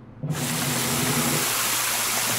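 Cartoon sound effect of water gushing out in a steady spray, starting suddenly about a third of a second in, as slime is washed away.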